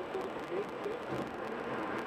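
Steady road and tyre noise heard from inside a car cruising on a highway, with a muffled voice talking underneath.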